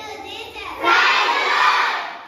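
A group of children shouting together in a loud burst that starts about a second in, then begins to fade near the end.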